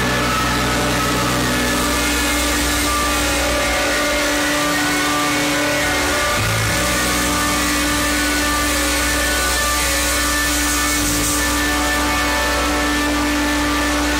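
Live band playing loud, sustained music on electric guitars, keyboards and drums, with long held notes and chords and a brief break in the held note about halfway through.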